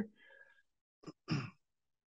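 A man's short sigh about a second in, just after a quick breath, amid otherwise near silence.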